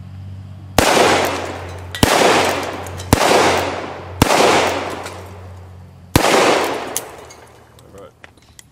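Five shots from a Colt Single Action Army revolver in .45 Colt with a 4 3/4-inch barrel. The first four come about a second apart and the last after a two-second pause, each followed by a long echo that dies away slowly.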